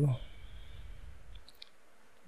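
A few short, faint clicks about one and a half seconds in, typical of a computer mouse being clicked in a quiet room.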